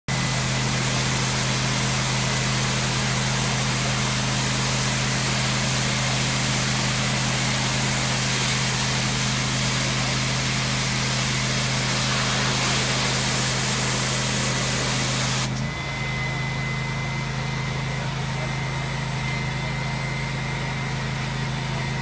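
A pressure washer wand sprays a high-pressure jet of water onto concrete pavement, a loud steady hiss over the steady drone of the unit's engine. About 15 seconds in, the spray stops abruptly and the engine keeps running.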